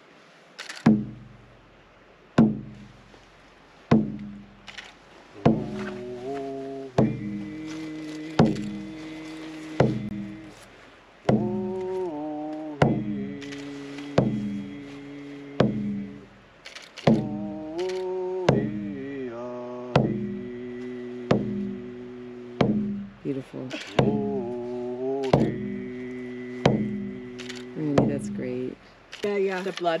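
A hand drum struck with a beater in a slow, steady beat, about once every second and a half, while a man sings over it from about five seconds in. It is an Indigenous paddle song.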